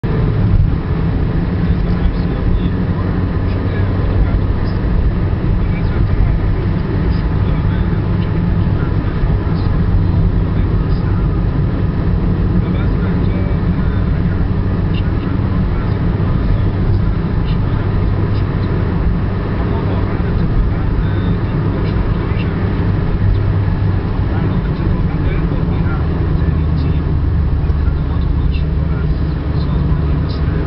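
Steady low rumble of road and engine noise inside a car's cabin while driving at highway speed.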